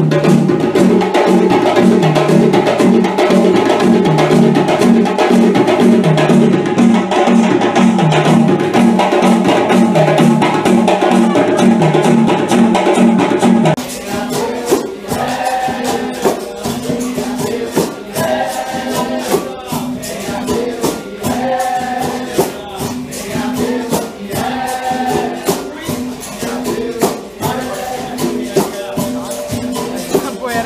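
Live hand-drum ensemble of djembes playing a steady, repeating rhythm. About 14 seconds in it cuts to capoeira roda music: berimbaus with a shaker-like rattle, an atabaque drum and voices singing along.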